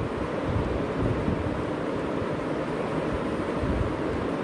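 Steady low background rumble and noise, of the kind that wind on the microphone or distant traffic makes, with no clear single event standing out.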